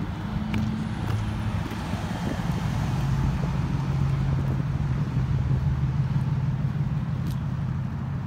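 Outdoor road traffic with a motor vehicle's engine hum, a steady low drone that swells in the middle and eases off near the end, over a constant low rumble.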